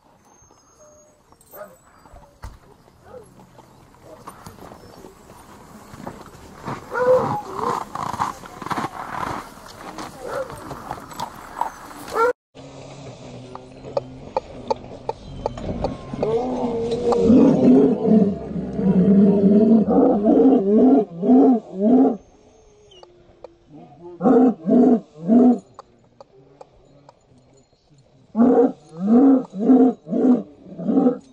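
Harnessed sled dogs barking and yelping, in rapid runs of about four barks a second with short pauses between the runs. The sound drops out for an instant about twelve seconds in.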